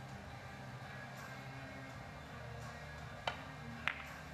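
Three-cushion billiards shot: the cue tip strikes the ball with a sharp click about three seconds in. About half a second later a slightly louder click follows as carom ball hits carom ball. Faint background music runs underneath.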